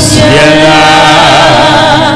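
A man singing a slow worship chant into a handheld microphone, holding long notes that waver in pitch, over steady sustained tones beneath.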